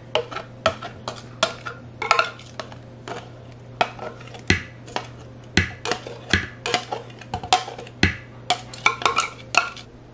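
Irregular clicks and knocks, two or three a second, of a plastic blender jar against the metal freezer bowl of a home ice cream maker as thick mango mixture is poured in.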